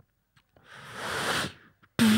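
A beatboxer's long breathy hiss into a handheld microphone, swelling for about a second and then cutting off.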